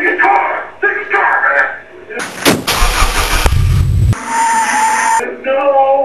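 Voices, broken off about two seconds in by a loud burst of noise with a deep rumble that starts and stops abruptly after about two seconds. A second of hiss follows, then voices resume near the end.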